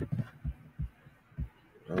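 Typing on a computer keyboard: about five dull, low keystroke thumps at uneven intervals.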